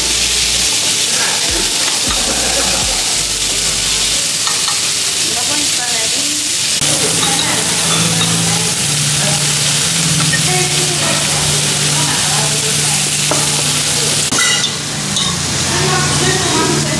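Beef short rib and thin-sliced meat sizzling on a hot cast-iron griddle plate of a Korean barbecue table grill: a steady, loud frying hiss, with a few light clicks as metal tongs turn the meat.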